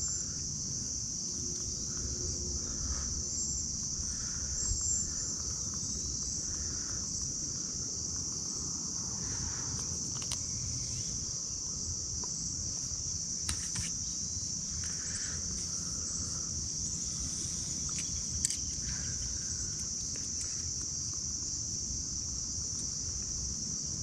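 Steady, unbroken high-pitched drone of a summer insect chorus, over a low rumble, with a single sharp click about 18 seconds in.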